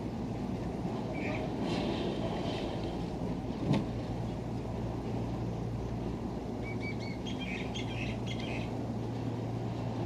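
Gondola cable system running with a steady low rumble and hum, with a single sharp clack a little before four seconds in. Birds chirp briefly twice over it.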